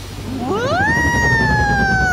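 A young woman's long, drawn-out scream: it rises sharply about half a second in, then holds and slowly sinks in pitch.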